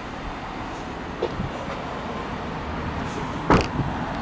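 A car's rear door is swung shut with a single loud thud about three and a half seconds in, over steady outdoor background noise, with a light click about a second in.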